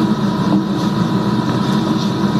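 Loud steady hum with hiss and a faint high tone: the background noise of a low-quality surveillance tape of an interview room.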